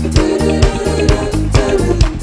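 Live band playing an upbeat groove with a steady beat: bass guitar, electric guitar, drum kit and keyboard.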